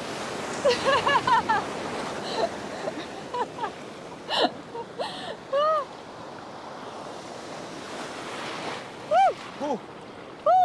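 Breaking surf washing in around people wading in shallow water: a steady rush of waves that swells in the first couple of seconds. Short laughs and cries of 'ooh' sound over it, loudest near the start and end.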